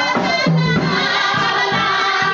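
Live soul band: two singers hold sung notes together over keyboard and drums, with a steady beat of low drum strikes coming in during the second half.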